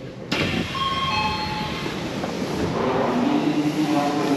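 Odakyu electric commuter train standing at a station platform, heard from inside the car: steady running and station noise, with a short falling two-note tone about a second in.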